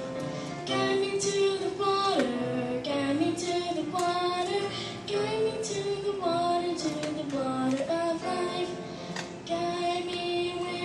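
A young girl singing solo into a microphone over musical accompaniment, holding long notes that slide between pitches.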